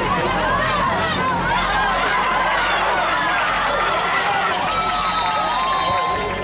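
Football spectators yelling and cheering during a play, many voices overlapping in a steady crowd din.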